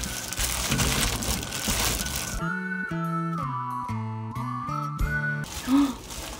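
Gloved hand mixing shredded vegetables and spices in a steel bowl: a wet, crinkling rustle. About two and a half seconds in, a short music cue with a whistle-like melody takes over for about three seconds.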